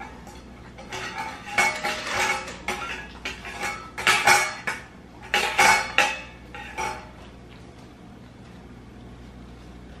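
A dog eating from a stainless steel bowl in a wire stand, the bowl clinking and ringing as the dog pushes at it, in a run of irregular clatters that stop about seven seconds in.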